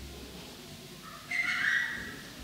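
A brief high-pitched sound, a squeal or whistle-like cry, starting a little past halfway and lasting under a second, over a faint low room hum.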